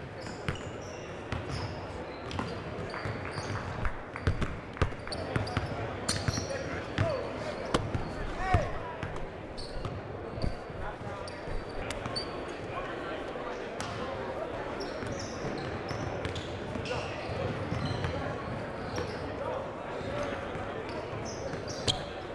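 Basketballs bouncing on a hardwood gym floor, many irregular thuds from several balls at once, over a murmur of distant voices echoing in a large gym.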